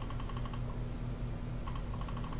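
Quick runs of light clicks at a computer, near the start and again near the end, over a faint steady hum.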